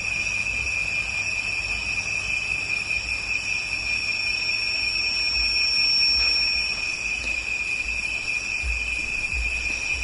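Insects chirring in a steady, unbroken high-pitched drone, with a low rumble underneath.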